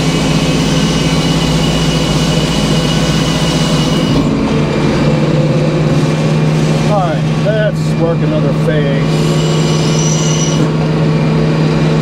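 Large circular sawmill blade cutting through a black locust log over the steady hum of the mill's engine. The cutting noise ends about four seconds in as the cut finishes, leaving the engine and blade running.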